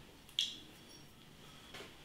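Quiet room tone, broken by a short soft hiss about half a second in and a fainter brief sound near the end.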